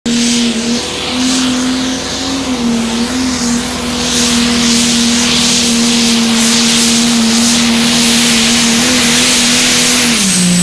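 Case IH pro stock pulling tractor's diesel engine running flat out at high, steady revs under full pulling load. The pitch wavers briefly in the first few seconds, then holds level.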